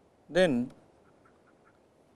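A man's voice saying one drawn-out word, 'then', shortly after the start, followed by faint room tone.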